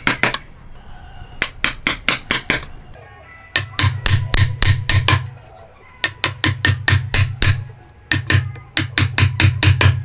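A hammer striking a wood chisel as it cuts into a log, in quick bursts of several sharp blows with short pauses between them.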